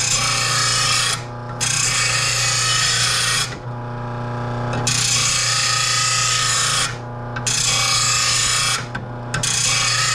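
RBG-712 bench blade grinder sharpening a steel lawn mower blade. The motor hums steadily while the blade is pushed against the wheel in about five passes, each a harsh grinding rasp of one to two seconds with short breaks between.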